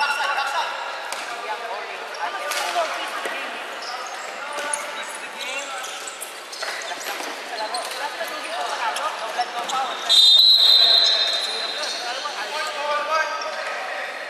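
Floorball match sounds in a gym: players' voices calling out, sneaker squeaks and sharp clacks of sticks on the plastic ball. About ten seconds in comes a loud, steady, high whistle blast lasting under a second, as from a referee's whistle.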